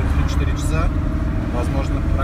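Engine and road noise of a vehicle moving slowly in city traffic, heard inside the cab as a steady low drone.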